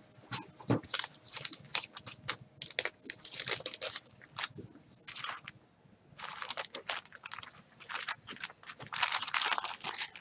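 Clear plastic crinkling as it is handled by gloved hands, a busy run of sharp, irregular crackles with a short lull just past halfway.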